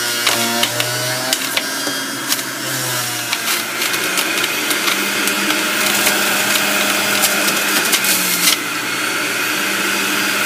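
Electric centrifugal juicer running, its motor humming steadily under a dense rattle of clicks and knocks as produce is shredded on the spinning cutter disc. The hum steps higher about four seconds in.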